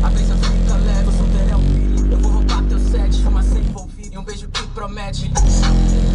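Rap music with heavy bass played loud on a car sound system. The bass drops out for about a second and a half past the middle, then comes back in.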